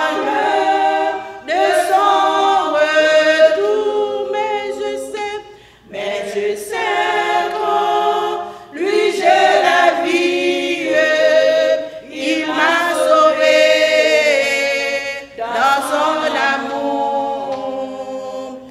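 A hymn sung a cappella by women's voices, with no instruments, led by one woman's voice. It is sung in long phrases with short breaks for breath.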